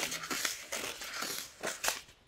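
Sand scraped and scooped with a plastic toy shovel in a plastic bucket: a series of irregular gritty scrapes, the two loudest near the end.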